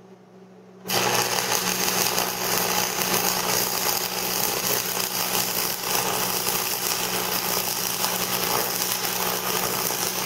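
AC stick welding arc from a Lincoln Electric buzzbox welder running a 1/8-inch 6011 rod at 115 amps. The arc strikes about a second in and then crackles steadily over a low hum.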